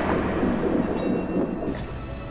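Water splashing and settling after a cargo container falls into the sea: a noisy wash of spray with a low rumble, fading away.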